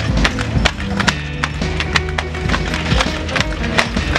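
Eight-legged Mondo Spider walking robot clattering as it walks, a rapid, irregular run of mechanical knocks from its metal legs, over background music with a steady bass line.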